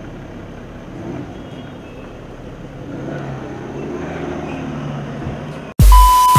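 Car engine running amid steady street traffic noise. Near the end it cuts abruptly to a much louder electronic music sting with deep bass hits and a steady beep tone.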